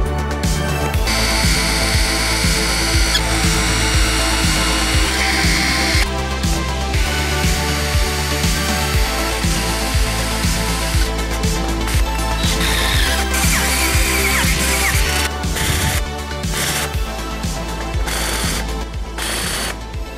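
Background music with a steady beat over power tools working a quarter-inch steel plate. A high, steady tool whine runs from about a second in to about six seconds. Around the middle, a whine falls in pitch as a tool winds down.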